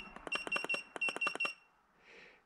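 Kingbolen BM580 battery tester beeping on each key press as its cold-cranking-amp setting is stepped down. Short high beeps come in quick runs, several a second, with two brief pauses, and stop about one and a half seconds in.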